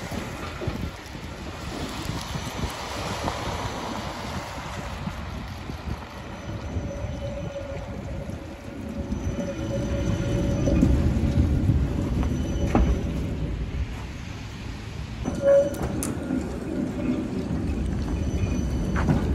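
A 71-407-01 tram running at low speed close by, with a rumble of wheels and running gear that grows louder about halfway through. A thin steady whine is heard for several seconds, and a short tone sounds near the end.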